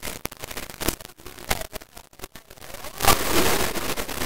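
Small dogs snuffling and sniffing at each other right by the microphone: irregular crackly bursts of breath and rustling fur, loudest a little after three seconds in.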